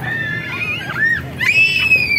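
A child squealing in two long, high-pitched screams, the second one louder, as on a ride down an inflatable slide.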